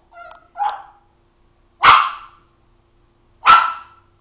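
Papillon, a small toy-breed dog, barking in an excited fit: a softer bark in the first second, then two loud, sharp barks about a second and a half apart.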